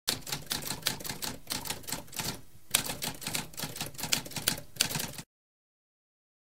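Typewriter typing: rapid clacking key strikes with a short pause about two and a half seconds in, stopping abruptly about five seconds in.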